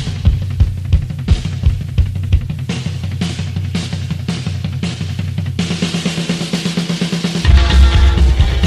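A band's drum kit plays a steady beat over low bass notes, then the drumming gets busier and brighter, and the full band comes in louder near the end.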